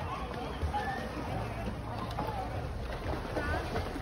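Faint voices of people at a pool over a steady wash of splashing water from swimmers kicking.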